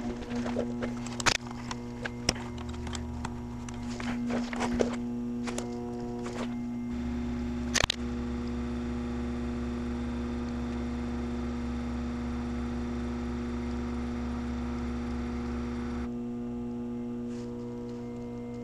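Background music over clicks and handling knocks. About seven seconds in, a steady low hum starts, runs for about nine seconds and cuts off suddenly; it fits the Passat's ABS pump being run by the scan tool while the brakes are bled.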